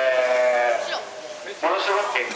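Speech only: a man's voice holds one long drawn-out vowel for most of the first second, pauses, then starts talking again about a second and a half in.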